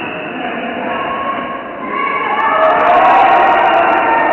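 Indoor floorball game: a steady din of voices from players and spectators, growing louder about two seconds in, with a scatter of sharp clicks near the end.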